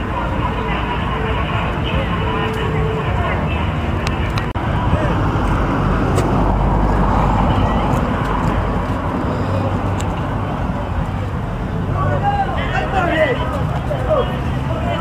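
A large bonfire of stacked logs burning, a steady rushing noise with scattered sharp crackles, under indistinct voices of people talking. The voices grow clearer near the end.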